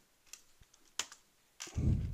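A few separate keystrokes on a computer keyboard, sharp single clicks spaced about half a second apart. Near the end comes a louder, low thump, the loudest sound here.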